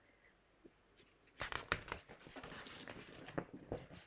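Paper picture book handled and a page turned: after a quiet start, a few sharp crackles about a second and a half in, then paper rustling.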